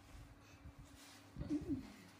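Faint soft knocks of handling, then, about one and a half seconds in, a short low two-note cooing vocal sound.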